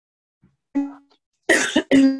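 A woman's voice coming through a video call that is breaking up: silent dropouts between clipped fragments of speech, and a short, harsh, noisy burst near the end. The choppiness is the sign of a poor internet connection.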